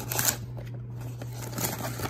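Cardboard trading-card blaster box being opened by hand, its flap scraping and rustling, with a short rustle just after the start and another near the end.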